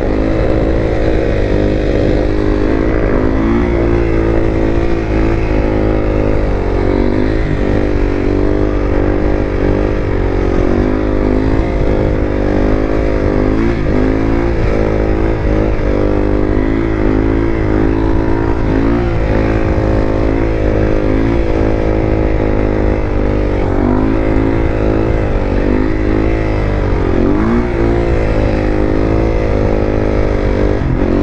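Yamaha WR450F supermoto's single-cylinder four-stroke engine pulling steadily through a long wheelie. Its pitch rises and dips every second or two with small throttle corrections.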